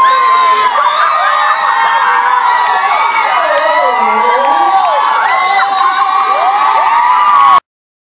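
Concert audience screaming and cheering, many high voices gliding and overlapping. The sound cuts off abruptly near the end.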